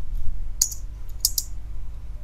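Computer keyboard keystrokes: a few short clicks as a word is typed and an autocomplete suggestion accepted, about half a second and just over a second in.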